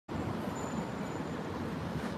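Steady street traffic noise, a low even hum of road vehicles.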